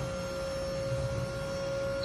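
Steady indoor background hum with one constant mid-pitched tone and no other events.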